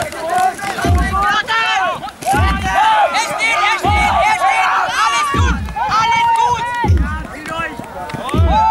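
Many voices shouting and calling over the field, over a low drum beat struck evenly about every one and a half seconds, five times. The beats are the Jugger 'stones' that count the game's time.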